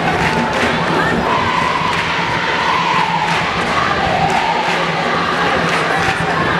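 A large crowd of students singing a Ghanaian jama cheer song together, many voices carrying a wavering melody over a dense, loud crowd din.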